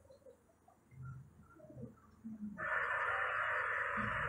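Faint scattered sounds, then a steady static-like hiss that starts suddenly about two and a half seconds in and holds.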